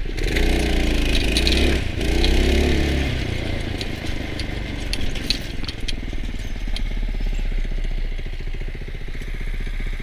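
Go-kart's small 5–6 hp single-cylinder engine revving up and down for the first few seconds, then running steadily under way, with the kart's frame rattling now and then over rough ground.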